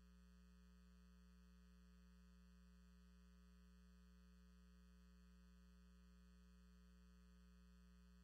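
Near silence with a faint, steady electrical hum on the audio feed.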